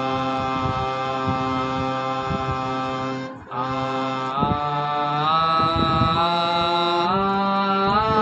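A harmonium sounds held notes while a man sings along with it, practising a sargam scale exercise (alankar). After a short break about three and a half seconds in, the harmonium and voice step up the scale note by note.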